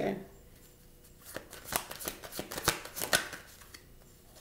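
Tarot cards shuffled and handled by hand, a run of short crisp snaps and flicks from about a second in until shortly before the end.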